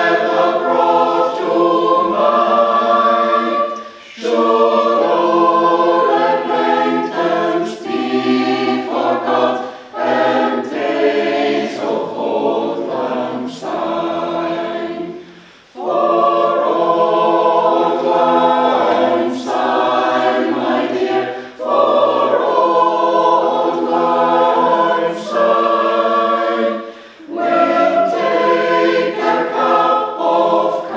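Mixed choir of men's and women's voices singing unaccompanied in several parts, in long phrases with three short breaks between them.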